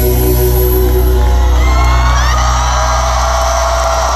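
Live rock band holding a loud, sustained closing chord, with the crowd cheering and whooping over it; shrill rising whoops come in about halfway through.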